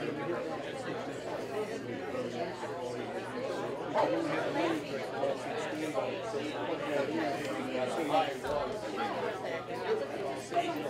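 Several people talking at once: indistinct, overlapping chatter with no single clear voice.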